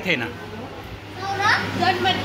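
Speech: a word or two at the start, then a child's high voice near the end, over a steady low hum.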